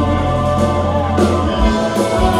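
Progressive rock band playing live through a PA, heard from the audience: held keyboard and guitar chords over heavy bass, with one note gliding up and down about a second in.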